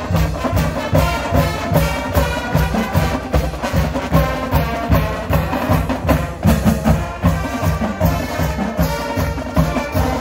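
High school marching band playing its school fight song: brass carrying the tune over a steady drumline beat of about three strokes a second.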